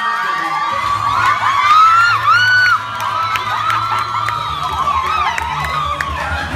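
A room full of guests cheering and whooping, many voices overlapping. Music starts underneath about a second in, its beat growing stronger near the end.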